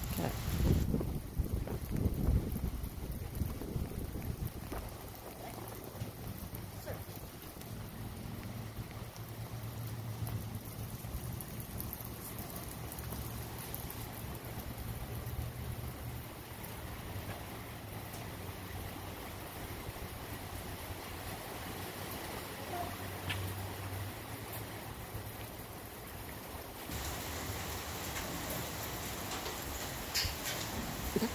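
Steady low rumble of wind on the microphone, with stronger gusts in the first few seconds.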